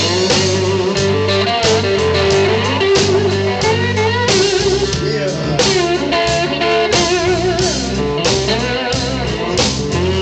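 Live blues-rock band playing: an electric guitar holds and bends wavering notes over a steady drum kit beat and low bass line.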